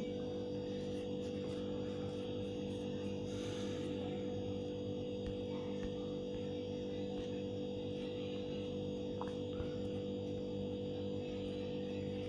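Steady electrical hum: a low drone of several held tones that never changes, with a few faint clicks.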